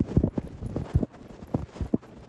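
Camera handling noise: irregular knocks and rubbing against the microphone, about half a dozen thumps over two seconds, as something brushes right up against the lens.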